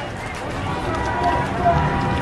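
Indistinct distant voices shouting over steady outdoor street noise.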